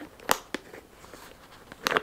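Metal clasp of a vintage Hermès bag clicking as it is worked into its locked position. There is a sharp click about a third of a second in, a faint tick soon after, and a louder double click near the end.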